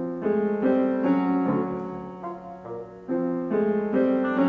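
Classical chamber music for piano and woodwind quintet, with the piano prominent: sustained chords that change every fraction of a second. The music fades briefly, then comes back in loudly about three seconds in.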